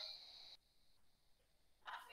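Near silence: room tone, with only a faint, brief sound at the very start.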